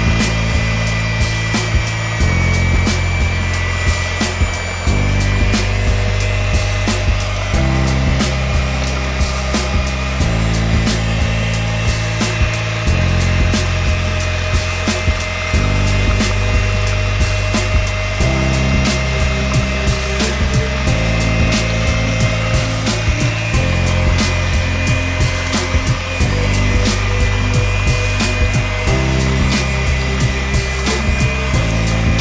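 Hamilton Beach electric hand mixer running steadily with a high whine, its beaters churning thick pumpkin pie filling in a plastic bowl. Background music with a low bass line that changes every couple of seconds plays over it.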